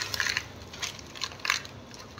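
About five short crackling, rustling noises in two seconds, the strongest about a second and a half in: objects being handled close to the microphone.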